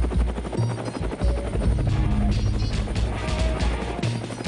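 Helicopter rotor chop mixed with theme music that carries a heavy bass beat.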